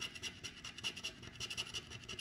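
A scratcher coin scraping the coating off a scratch-off lottery ticket in quick, repeated strokes.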